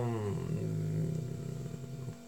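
A man's voice trailing off into a long, low hummed 'mmm' of hesitation that drifts slightly lower in pitch and fades near the end.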